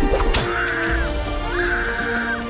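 Drama soundtrack: background music with held notes, a sharp hit about a third of a second in, and two drawn-out harsh calls about a second apart.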